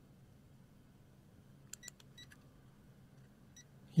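A few faint, short electronic beeps from a digital multimeter as it is switched to diode mode, over a low steady hum.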